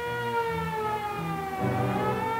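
Civil-defense air-raid siren wailing, its pitch sliding slowly down and starting to rise again near the end, sounding the attack warning.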